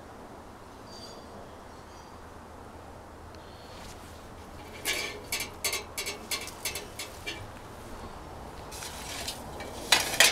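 A faint steady outdoor background, then about halfway through a quick run of short crackling rustles, about three a second, as leafy stems brush close past.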